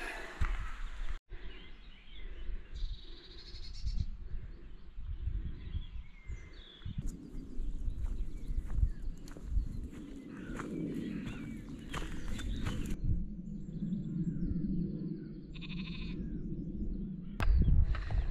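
Sheep bleating now and then over the sound of footsteps on grass.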